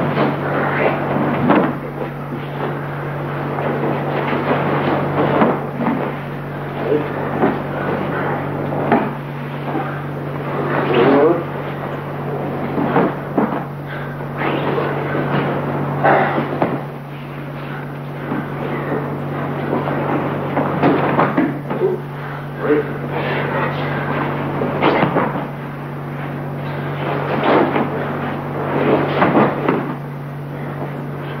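A steady low hum with irregular knocks and brief voice-like sounds over it, coming every second or so.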